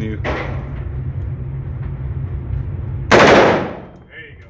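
A short full-auto burst from an HK G36 5.56 mm rifle about three seconds in: a rapid string of shots at about 750 rounds a minute, lasting about half a second, then dying away in the indoor range's echo. A low steady hum runs underneath before the burst.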